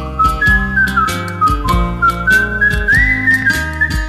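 A person whistling a melody, one clear tone that glides from note to note, over a karaoke backing track with a steady beat of about four ticks a second and a bass line.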